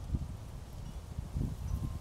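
Low, uneven rumbling noise on a handheld camera's microphone as it moves among plants, with faint rustling.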